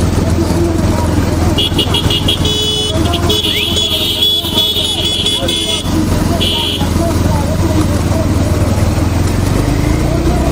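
Racing bullock carts with shouting voices over a steady low rumble of vehicle engines. Shrill high-pitched blasts sound: a quick run of short toots about a second and a half in, a long blast lasting a couple of seconds in the middle, and one more short blast soon after.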